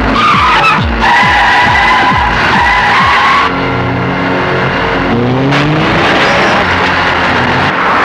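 Film car-chase sound effects: a long tyre squeal that cuts off suddenly about three and a half seconds in, over revving vehicle engines, with background music.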